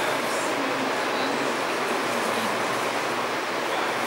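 A steady, even hiss of background room noise with no distinct events.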